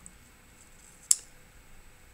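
A single sharp click from the computer desk, about a second in, over faint steady room hiss.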